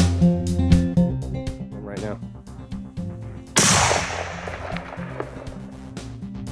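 A single rifle shot about three and a half seconds in, sudden and loud, with a long echo rolling away, over guitar background music.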